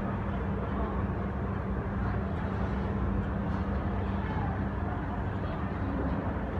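Escalator running: a steady low machine hum. Faint voices are heard in the background.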